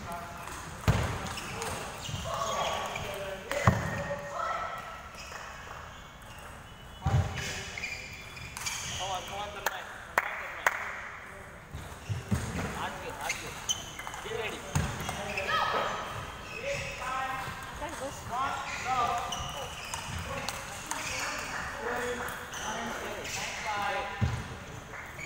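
Table tennis ball knocks off bats and table, a scattered handful of sharp clicks, against a background of people talking in a sports hall.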